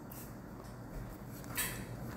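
A wooden spatula faintly stirring and tossing diced vegetables, scrambled egg and sliced hot dogs in a nonstick frying pan, with one short, louder scrape about one and a half seconds in.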